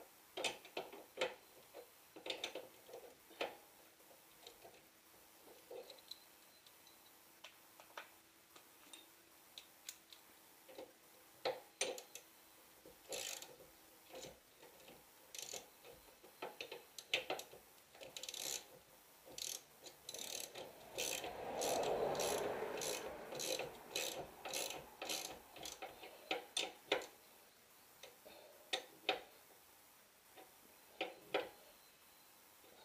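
Hand ratchet clicking in short irregular runs as the tie rod end nut is run down on a Corvette C6 rear knuckle. A brief burst of rustling noise comes partway through.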